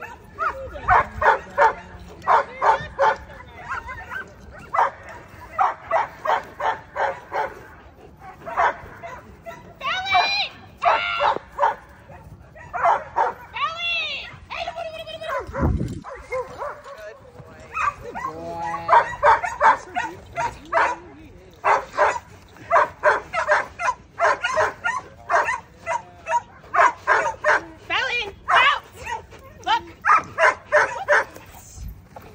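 A 9-month-old German Shepherd barking in quick runs of sharp barks, broken by a few high rising-and-falling whines, during bite-work against a decoy. A single low thud about halfway through.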